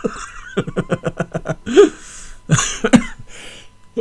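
A man laughing in quick chuckles, then coughing several times.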